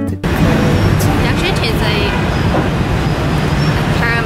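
Steady din of city street traffic heard from several floors up, dense and continuous, with faint voices mixed in.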